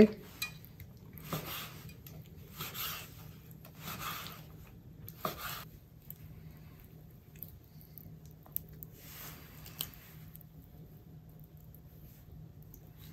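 Long kitchen knife cutting raw offal on a wooden cutting board: a series of short scraping, slicing strokes about a second apart in the first half, then quieter handling of the wet meat with another stroke and a couple of sharp clicks near the end.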